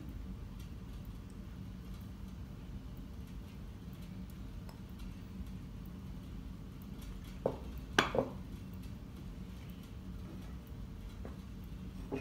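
Quiet handling of a glass baking dish over a low steady room hum as fingers spread shredded cheese. About two-thirds of the way through come three sharp clicks close together against the glass dish.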